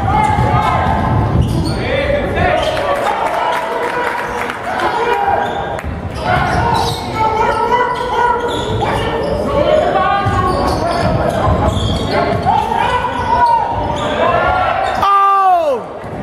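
Basketball bouncing on a hardwood gym floor during play, with voices calling out, echoing through a large gym. A few short, sharp squeaks come near the end.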